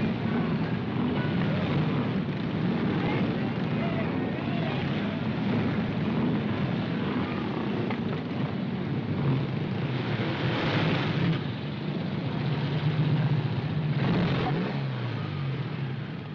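Several motorcycle engines running and revving at low speed as riders circle close by. Near the end a single motorcycle's engine comes closer, its steadier hum standing out above the rest.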